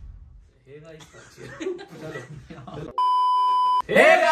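Low voices talking, then about three seconds in a steady high electronic beep sounds for just under a second and cuts off sharply.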